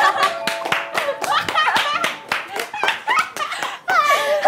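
A small group clapping rapidly and cheering with excited shouts and laughter, celebrating a win.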